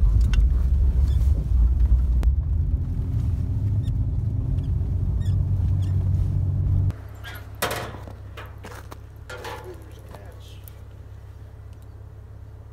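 Vehicle cab: engine and road rumble while driving up a snow-covered driveway. About seven seconds in it cuts off abruptly to a much quieter steady low hum with a few brief sounds.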